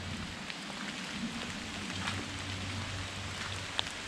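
Steady outdoor background hiss with a faint low hum that comes in about halfway through, and a couple of faint clicks.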